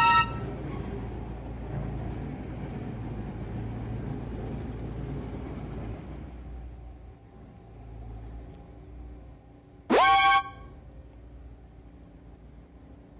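Two short, loud horn-like toots, one at the start and one about ten seconds in. Each slides quickly up in pitch and then holds briefly. Between them runs a low outdoor rumble that fades about six seconds in.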